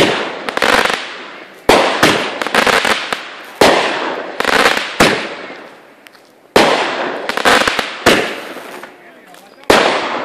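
Consumer aerial fireworks going off in quick succession: about ten sharp bangs at uneven spacing, roughly one a second, each followed by a fading crackle as the stars burst.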